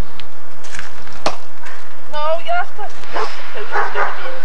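Two blows of a long-handled hand tool striking the ground, about half a second apart, followed by a short, high, wavering cry.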